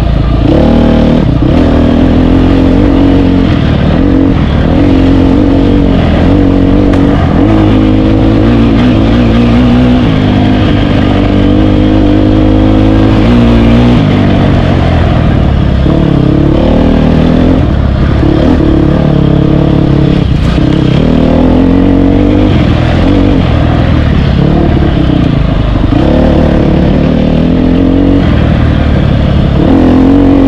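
Off-road dirt bike engine, loud and close, revving up and falling back again and again, with short dips every few seconds as the rider shifts and backs off the throttle.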